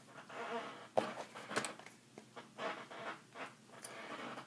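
A few light clicks and faint rustles of a mobile phone being picked up and handled.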